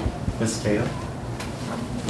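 Quiet, brief talking in a classroom, with a sharp clunk at the very start.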